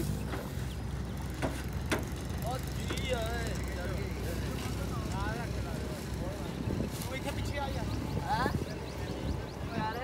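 An engine idling steadily under scattered men's voices calling out, with a few sharp knocks.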